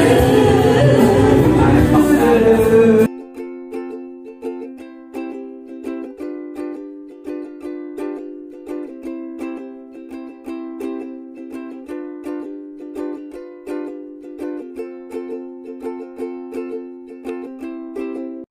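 Karaoke singing over a backing track in a small room for about three seconds, then a sudden cut to light plucked-string background music with a steady beat.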